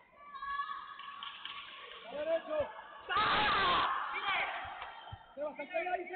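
Shouting voices echoing in a sports hall, Spanish coaching calls such as "¡Ve tú!" among them. About three seconds in comes a loud, noisy yell lasting under a second, the loudest sound here. A short dull thud follows a couple of seconds later.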